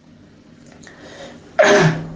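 A man's voice: after a pause of over a second, one sudden short vocal burst near the end that trails off.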